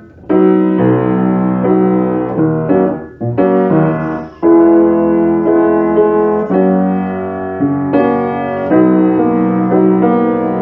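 Background piano music: a slow melody over sustained chords, in short phrases.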